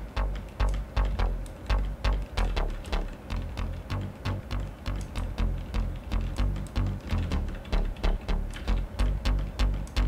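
Synthesized hard bass from the Diversion software synth playing a repeating pattern of short, punchy low notes, run through its classic distortion effect while the distortion is being tried out.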